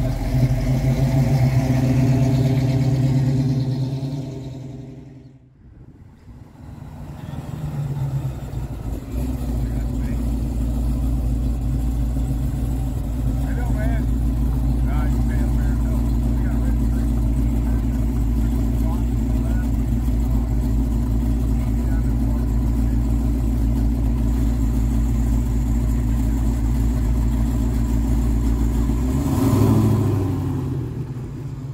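A car engine running at a steady idle. The sound fades down about five seconds in, then a second engine's steady, deep idle rumble comes up and holds to the end.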